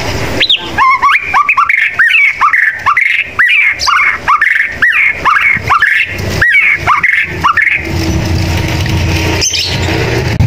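White-rumped shama singing a fast series of short, up-swept whistled notes, about three a second, that stops about eight seconds in. A low steady rumble follows near the end.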